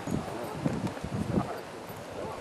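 Irregular hollow knocks of footsteps on a wooden podium block as people step up onto it, with faint talk behind.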